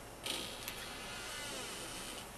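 Light crinkly rustle of small paper and ribbon craft embellishments and their wrapping being handled in the hand, starting about a quarter second in, with one small click.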